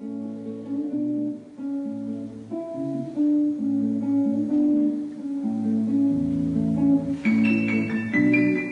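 A guitar plays plucked notes and chords, opening the piece. Near the end a piano comes in, and the sound turns brighter and fuller.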